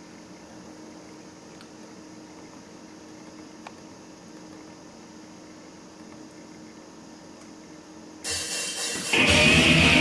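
Quiet room tone with a few faint clicks, then about eight seconds in a heavy metal recording starts playing loudly through a studio monitor loudspeaker, opening on a long electric-guitar slide rising in pitch.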